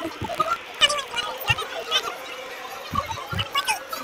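Voices and laughter in short, broken bursts.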